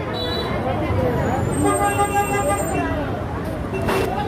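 A vehicle horn sounds steadily for about a second in the middle, over crowd voices and street traffic.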